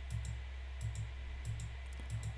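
Faint clicks, in pairs about every half second, over a steady low electrical hum.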